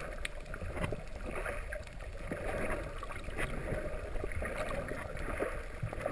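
Water rushing and sloshing around a camera in the sea, a steady noise with scattered short clicks and crackles.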